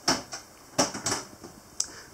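A handful of sharp, irregular metallic clicks and taps from a hand handling a gimballed galley stove and its pot-holder bars.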